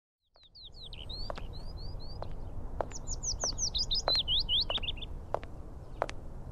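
Songbirds chirping: quick runs of slurred, sweeping chirps starting about half a second in, over a low outdoor rumble with a few sharp clicks.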